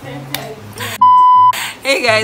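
A loud, steady single-pitched beep lasting about half a second, midway through, dropped over the speech with all other sound cut out: an edited-in bleep over a word, of the kind used to censor speech.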